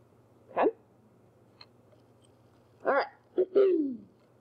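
A woman's voice speaking two short words, then laughing briefly near the end, with a low, quiet hum in the pause between.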